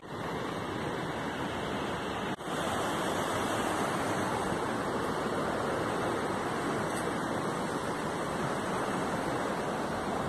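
Steady rush of a mountain river flowing over rocks, with a brief dip a little over two seconds in.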